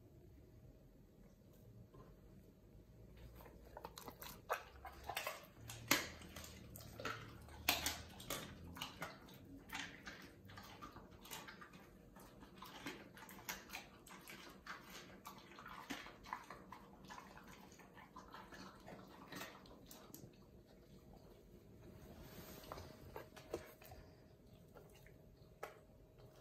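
A German Shepherd chewing and tearing at a chunk of raw meat: an irregular run of sharp, smacking chewing sounds that starts a few seconds in, is busiest early on, and eases off near the end.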